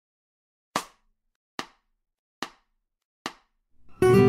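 Four sharp, evenly spaced clicks a little under a second apart, a count-in. Acoustic guitar playing begins right at the end, at the same tempo.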